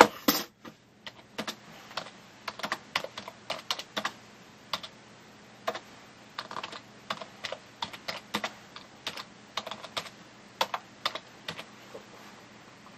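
Typing on a computer keyboard: irregular keystrokes in quick bursts of several a second with short pauses, entering a search query. A louder click comes right at the start.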